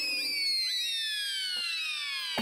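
Descending whistle sound effect: a layered, whistle-like tone sliding steadily down in pitch for about two seconds.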